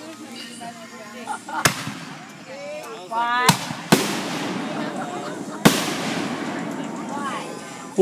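Aerial fireworks bursting overhead: four sharp bangs, about a second and a half, three and a half, four and five and a half seconds in, each followed by a lingering rushing tail.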